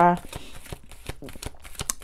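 Tarot cards being shuffled by hand, heard as a quick, irregular run of light clicks.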